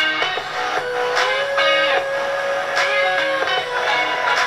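Guitar-led music played back over Bluetooth through a Pyle P3001BT amplifier into unboxed car-audio speakers: a super horn tweeter, a 10-inch and a 6.5-inch speaker sitting loose on the bench. Held guitar notes ring over a steady beat.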